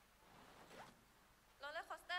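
Near silence: a faint rustle, then near the end a brief high-pitched voice calling out.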